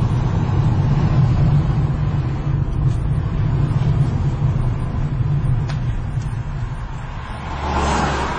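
Car engine and road noise heard from inside the cabin while driving, a steady low drone that eases off a little past the middle. A rushing swell builds near the end.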